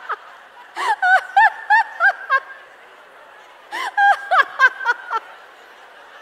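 A woman laughing deliberately on a headset microphone as a laughter-yoga exercise, in two bursts of rapid 'ha-ha-ha' pulses, about a second in and again near four seconds. A large audience laughs along underneath.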